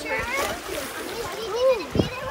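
Busy swimming-pool sounds: water splashing from swimmers and people's voices. Near the end, one drawn-out voice call rises and falls in pitch.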